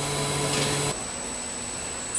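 Wrap-around case packing machine running with a steady mechanical hum and a brief hiss. About a second in, the sound drops abruptly to a quieter steady background hum.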